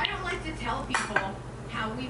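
Tableware clinking: two sharp clicks about a second in, a quarter second apart, of chopsticks knocking against a dish.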